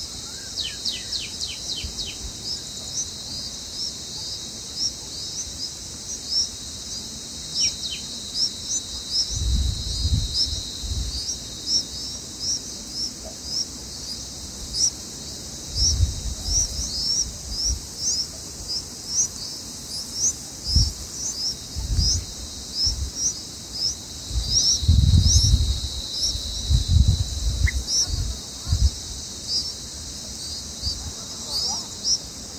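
Bulbul nestlings begging with short high chirps, about two a second, over a steady high insect drone. A few quick falling chirps come near the start, and low rumbles come and go in the second half.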